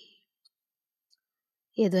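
A woman speaking Hindi. The end of a phrase is followed by a pause of about a second and a half of near silence with two faint clicks, and speech resumes near the end.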